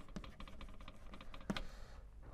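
Chalk writing on a blackboard: a quick run of light taps and scratches as letters are formed, with one sharper tap about one and a half seconds in.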